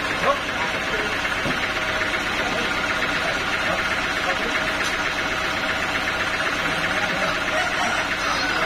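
Band sawmill machinery running steadily and unloaded while the log is positioned, not yet cutting, with a brief knock near the start.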